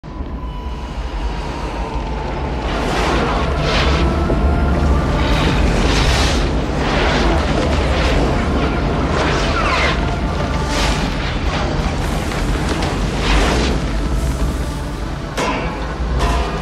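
Film sound design for the asteroid: a continuous deep rumble with repeated whooshing, booming surges, over background music.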